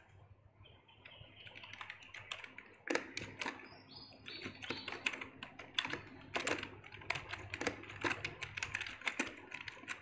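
Typing on a computer keyboard: quiet, irregular keystroke clicks, several a second, starting about a second in.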